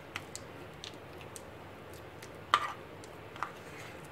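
Metal spoon stirring butter and chopped garlic in a ceramic bowl: faint scattered clicks and scrapes, with one louder click about two and a half seconds in.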